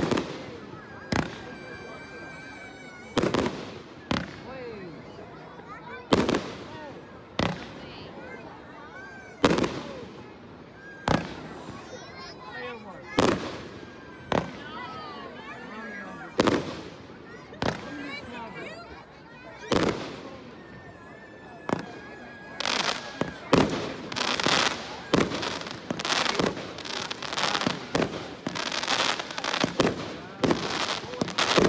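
Fireworks display: aerial shells bursting with sharp bangs every second or two, then a rapid run of many bangs in close succession over the last several seconds.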